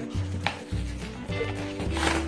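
Plastic toy packaging being handled and pulled open: a sharp click about half a second in and a crackle near the end, over background music.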